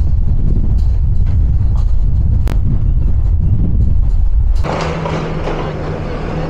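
Deep rumble of wind buffeting the microphone. About four and a half seconds in it switches abruptly to a steady hiss with a low, steady engine hum from a tracked excavator working on the demolition.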